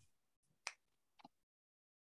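Near silence, broken by two short clicks, the second fainter.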